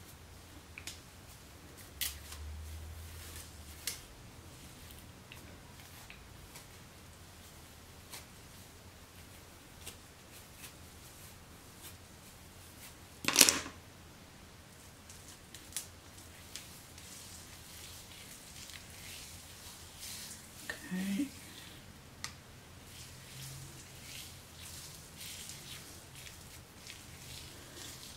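Faint scratching and small clicks of a plastic detangling brush being pulled through wet, coily hair, with one louder brushing rustle about halfway through.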